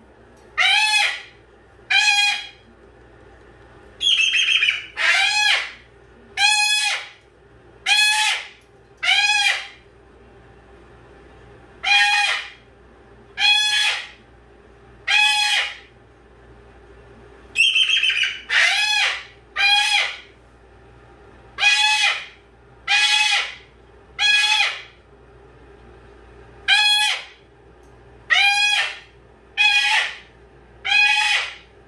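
White cockatoo calling over and over: loud, harsh calls about half a second long, one every second and a half or so. A longer, rasping screech breaks in about four seconds in and again a little past the middle.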